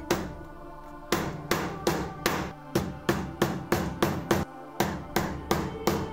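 A hammer striking a leather workpiece laid on a wooden block. After one blow at the start and a short pause, the blows come steadily, about three a second.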